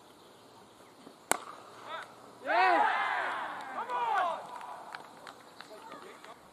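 A single sharp crack of a cricket bat striking the ball about a second in. About a second later several players shout at once for roughly two seconds.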